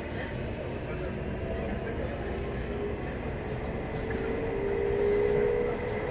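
Electric local train accelerating away from a station, heard inside the car: a low running rumble, joined from about four seconds in by a motor whine that slowly rises in pitch as the train gathers speed.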